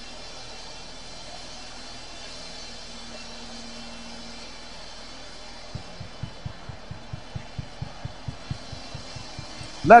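A congregation praying aloud together, heard as a steady murmur of many voices in a large room. A little under six seconds in, a low, regular thumping beat starts at about four beats a second.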